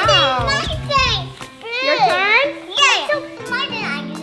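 Young children's excited, high-pitched voices exclaiming and squealing over background music.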